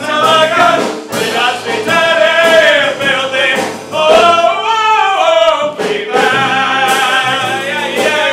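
Three men singing a rollicking, mountain-style musical-theatre number together, with long held notes that bend in pitch.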